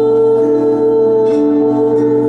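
A woman's voice holding one long sung note over sustained keyboard chords, the chords changing twice beneath it.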